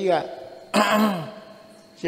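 Speech only: a man speaking Burmese in short phrases with pauses between them.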